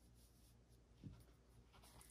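Near silence: room tone, with a faint soft tap about a second in as a tarot card is handled and set down on a cloth-covered table.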